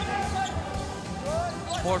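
A basketball being dribbled on a hardwood court, the bounces heard over arena crowd noise and voices.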